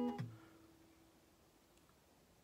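Fender acoustic guitar's G, D and B strings, barred at the ninth fret, plucked together and ringing out, dying away within about a second with one note lingering a little longer.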